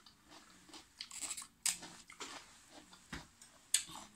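A person chewing crisp raw cabbage leaves, with irregular crunches; the loudest come about a second and a half in and just before the end.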